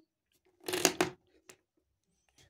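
Marker pens and the paper worksheet being handled: a short rustle, then a single sharp click about a second and a half in, as a black marker is put down and a pink one taken up.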